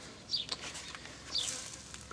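A bird chirping twice, short high notes about a third of a second in and again near the middle, over quiet outdoor background.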